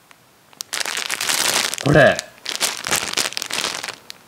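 A clear plastic gift bag crinkling as hands handle and open it, in dense continuous rustling that starts under a second in. A short spoken word cuts through about two seconds in.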